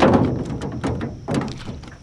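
Knocks and clicks from an angler working a baitcasting reel in an aluminum jon boat while reeling in a hooked bass. A heavy thump right at the start is followed by lighter knocks about every half second.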